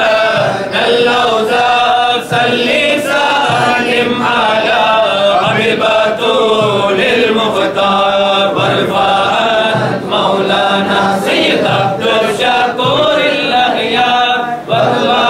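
A group of men chanting together in unison, an unaccompanied devotional recitation that runs on without a break.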